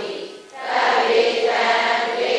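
Several voices chanting Buddhist verses together in unison, a sustained sung recitation that breaks briefly for breath about half a second in and then carries on.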